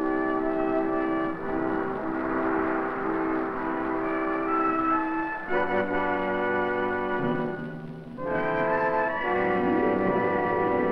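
Orchestral closing music of a vintage film soundtrack, brass holding sustained chords that shift to new chords about halfway through and again near the end.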